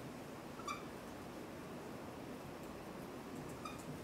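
Dry-erase marker squeaking on a whiteboard while writing: two short, high squeaks, one just under a second in and one near the end, over quiet room hum.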